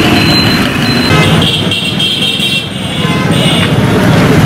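Busy street traffic noise, with vehicle horns sounding over it.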